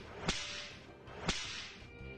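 Two sharp whip-like cracks about a second apart, each trailing off in a hiss.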